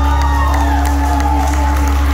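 The final held chord of a live song played through a PA, a sustained low drone with a long note held over it, while the crowd cheers and whoops.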